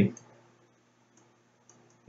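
A spoken word ends, then near silence with a faint steady low hum and a few very faint clicks from the digital pen as digits are written on screen.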